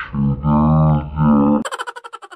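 An edited-in sound effect: a loud held voice-like note, then, about a second and a half in, a quick run of fading ticks.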